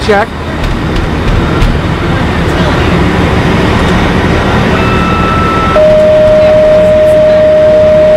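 A steady low rumble, then about five seconds in a faint high electronic tone that gives way to a loud, steady single-pitched alarm tone held for about three seconds.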